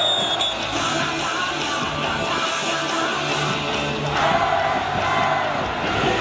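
Baseball team cheer song playing at a stadium, with a crowd singing and chanting along.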